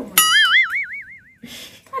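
Cartoon 'boing' sound effect: a bright twanging tone that starts suddenly, wobbles up and down in pitch and fades out over about a second.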